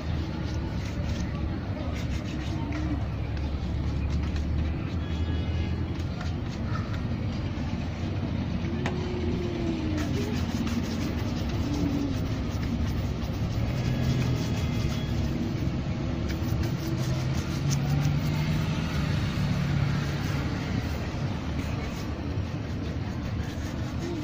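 Steady street traffic rumble. From about ten seconds in, a bristle shoe brush is swept back and forth over leather shoes in a rapid series of brushing strokes.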